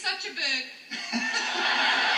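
Chuckling, then from about a second in, a steady swell of audience laughter from a crowded hall, heard through a television's speaker.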